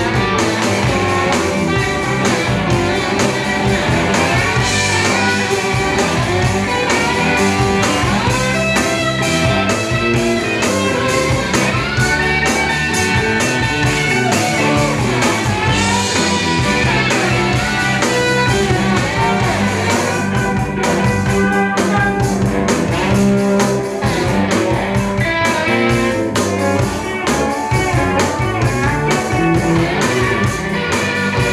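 Live blues-rock band playing an instrumental passage, with an electric guitar playing bending lead lines over a steady rhythm from bass and drums.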